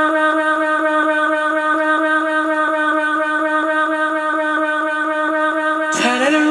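One long sung note from an isolated dance-track vocal (acapella), held at a single steady pitch, with a faint regular pulse about four or five times a second.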